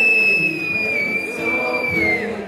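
A single high, steady whistle, held for about two and a half seconds and dipping slightly in pitch as it ends, over strummed ukulele chords.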